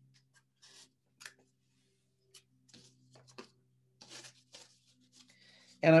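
Faint, scattered rustles and light taps of hands handling yarn on a small hand loom, with near-silent gaps between them.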